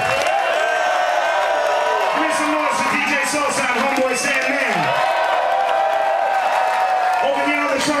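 Amplified male voice through a club PA, holding and sliding long notes without clear words, over crowd cheering and whoops. One note falls steeply about five seconds in, and no steady band beat is heard.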